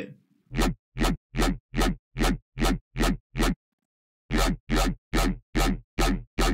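Distorted dubstep bass synthesized in Xfer Serum, played as a rapid run of short notes about two and a half a second with a pause of about a second midway. Each note has a deep sub under a shifting, bending growl. Each note cuts off sharply, its tail trimmed by a reduce-ambience effect so it sounds sharper and more aggressive.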